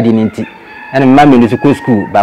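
A rooster crowing in the background, under a man's speech.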